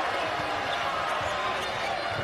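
Basketball being dribbled on a hardwood court, over the steady noise of an arena crowd.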